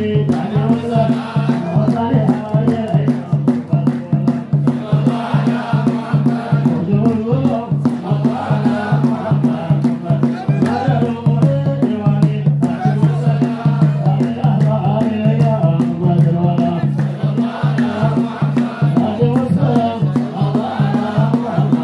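Men chanting an Ethiopian Islamic menzuma together, a lead voice with the group, over a steady low beat of about three a second with hand-clapping.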